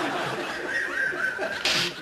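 Several men laughing and giggling helplessly, breaking up in the middle of a scene (actors corpsing). Near the end there is a short, loud burst of noise.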